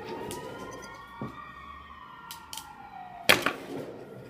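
A siren wailing in one slow rise and fall of pitch. A few light clicks, then a loud sharp knock a little over three seconds in.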